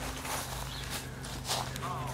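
Footsteps on a path covered in dry leaf litter, irregular and soft, over a faint steady low hum.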